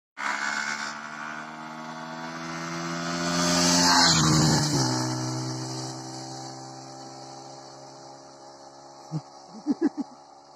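A motorcycle engine at speed approaches and passes close by about four seconds in, its pitch dropping as it goes past, then fading away into the distance. A few short knocks come near the end.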